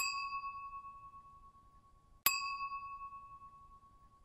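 Two bell-like ding sound effects about two and a quarter seconds apart. Each is a single clear chime that rings and fades away, the kind of editing effect laid over an animated map as location pins appear.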